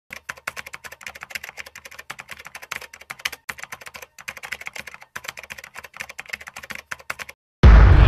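Rapid typing key clicks, several a second with a few short pauses, as a sound effect for on-screen text being typed out letter by letter. They stop a little before the end, and after a brief silence a sudden loud, deep boom starts and keeps going.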